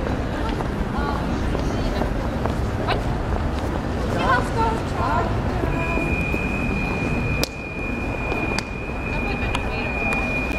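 City street noise at a tram stop: a steady low rumble of traffic, brief voices of passersby a little before the middle, and a few sharp clicks. From about six seconds on a thin, steady high whine sounds as the camera comes up to a Škoda 15T tram standing at the stop.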